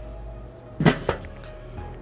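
Porcelain-enameled steel lid of a Weber kettle grill set down onto the bowl: one sharp metal clank about a second in, followed by a lighter knock as it settles.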